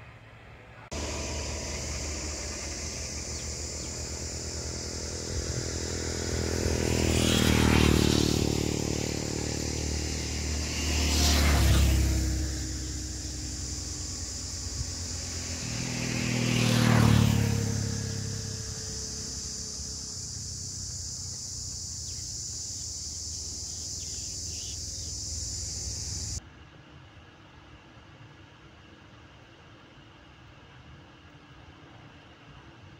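Motor vehicles passing one after another on a road, three pass-bys that each swell and fade, peaking about 8, 11 and 17 seconds in. The pitch of the third drops as it goes by. Under them runs a steady high hiss, and all of it cuts off suddenly near the end, leaving only a faint low background.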